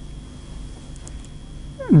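Pause in a man's speech: faint room noise with a thin, steady high-pitched hum, then his voice starts again near the end.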